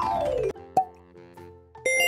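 Edited transition sound effects: a falling pitched glide that ends about half a second in, a short pop, then a bright chime starting just before the end.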